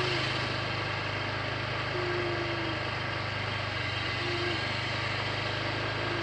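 An engine running steadily at idle, a low even hum with no revving.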